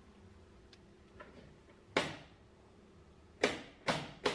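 A few sharp clicks or knocks, each dying away quickly: faint ticks in the first half, a loud one about halfway through and two more near the end.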